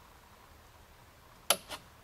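A single sharp click about one and a half seconds in, with a couple of fainter ticks just after, over quiet room tone. It is the output relay of a Johnson Controls A419 electronic temperature controller dropping out as the probe reading falls to its 80 °F cut-out.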